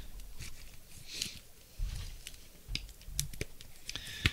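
Light scattered clicks and rustles of trading cards and plastic card holders being handled and shuffled on a table.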